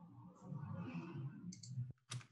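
Faint clicks and low muffled noise picked up by an open video-call microphone, cutting off suddenly near the end.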